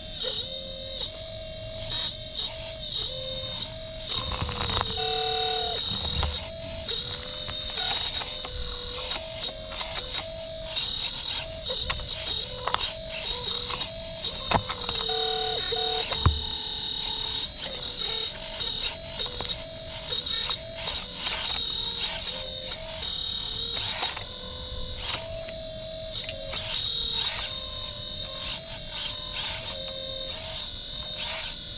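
Hydraulic pump of a 1/12-scale full-metal RC excavator (Caterpillar 339DL model) whining steadily as the arm and bucket are worked. Its pitch dips repeatedly and recovers as the pump takes load, with a few sharp clicks.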